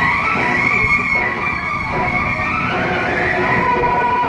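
Steady, loud din of a large outdoor crowd.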